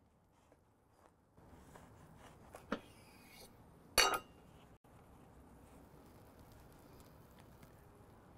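A knife cutting through a burger on a wooden board, mostly quiet, with a light knock and then a sharp metallic clink about four seconds in.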